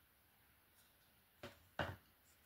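Two short knocks about a second and a half in, the second louder: a plastic paint cup being set down on the table. Otherwise quiet room tone.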